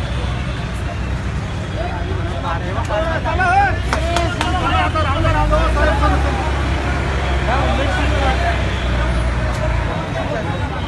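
Roadside ambience: several people talking indistinctly over a steady low rumble of traffic, with a few sharp clicks near the middle.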